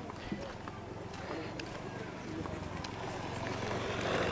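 Quiet open-air market ambience: faint distant voices over a low steady hum, with a few light clicks.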